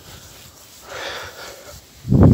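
A person's breath: one soft, hissy exhale about a second in.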